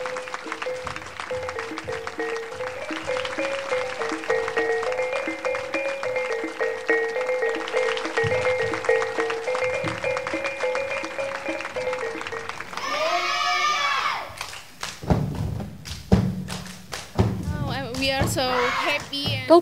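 Minangkabau folk ensemble music for a plate dance: a fast, repeating melody over quick clicking strokes and drum beats, which stops about thirteen seconds in. A voice then sings a short wavering phrase, and a few loud thumps follow near the end.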